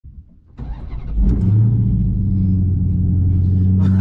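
Dodge Hellcat's supercharged 6.2-litre HEMI V8 starting up: a brief crank about half a second in, catching with a surge just over a second in, then settling into a loud, steady idle.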